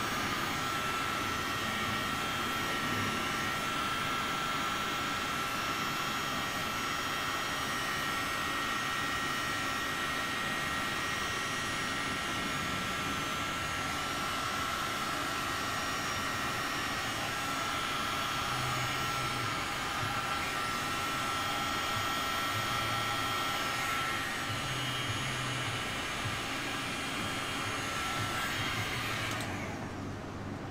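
Electric heat gun running steadily, a rush of blown air with a steady whine, held over wet white resin to push it into wave lacing. It switches off just before the end.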